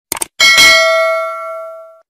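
Animation sound effect of a quick double mouse click followed by a bright bell ding, the notification-bell chime of a subscribe button, ringing for over a second and fading.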